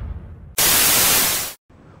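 Sound effects: the tail of an explosion fading out, then about a second of loud, even TV-static hiss that cuts off suddenly.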